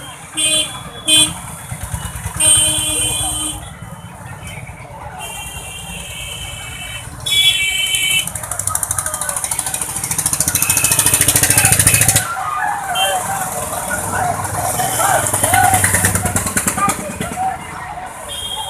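Roadside traffic: several short horn beeps in the first half, then a motorcycle engine growing loud as it passes close by about two-thirds of the way in, with people's voices along the street.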